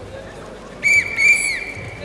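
Referee's whistle blown in two blasts, a short one and then a longer one, about a second in. It is the signal for the NAO robots to start play.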